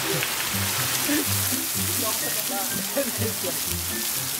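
Steady hiss of water pouring and spraying from a water-park play structure, with background music's stepping bass line underneath.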